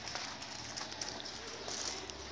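Faint footsteps and light handling noise as a phone camera is carried along a garden path: a few soft, irregular ticks over a low steady hiss.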